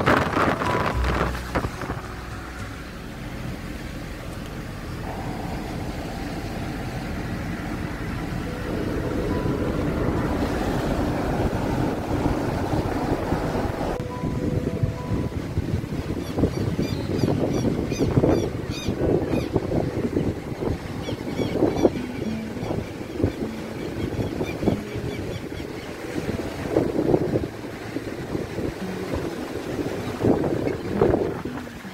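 Car driving along a seaside road, its running noise mixed with wind buffeting the microphone. The wind noise is smoother in the first half and comes in uneven gusts in the second half.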